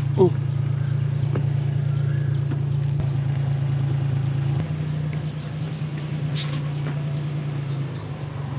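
Tuk tuk's engine idling with a steady low hum, dropping slightly in level after a click about halfway through.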